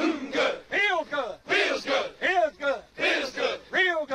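A group of men chanting a military marching cadence, their shouted lines falling in a steady marching rhythm.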